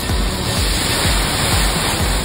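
The rush of water from a water-park tipping bucket dumping its load, swelling about half a second in, under background music with a steady beat of about two thumps a second.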